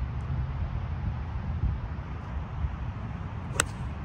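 A single sharp click near the end as a golf iron strikes the ball off the tee, cleanly struck ('pured'), over a steady low background rumble.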